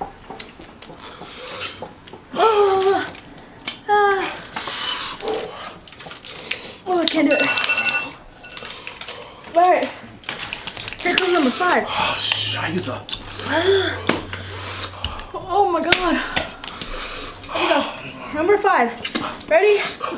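People's voices making wordless murmurs and groans, the bending pitch of moaning rather than words. A few sharp clicks of handling come in between.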